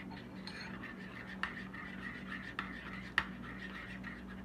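A spoon stirring mint yogurt sauce in a ceramic bowl, scraping and clicking against the bowl's sides a few times, over a steady low hum.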